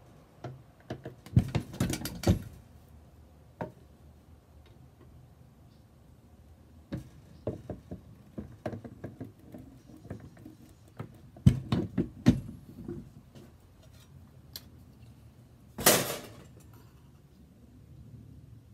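Hand-lever bench shear cutting copper sheet: clusters of sharp metal clanks and snaps as the blade is worked, with lighter clicks of the sheet being handled between cuts, and a brief louder rasp of metal near the end.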